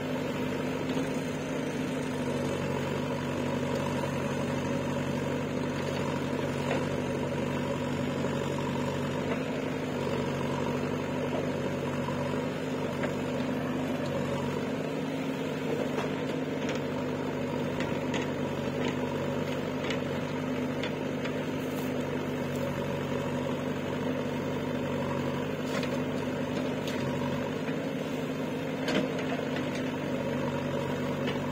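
Diesel engine of a JCB 3DX backhoe loader running steadily at a constant speed, with a few faint clicks over it.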